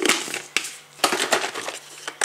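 Plastic containers handled on a kitchen worktop: a knock at the start, then a dense run of small clicks and crackles about halfway through.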